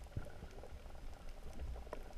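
Underwater reef ambience heard through a GoPro's waterproof housing: a low rumble with scattered crackling clicks at irregular times.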